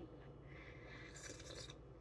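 A faint sip of coffee from a mug: a soft hiss that is strongest from about one to one and a half seconds in, over quiet room hum.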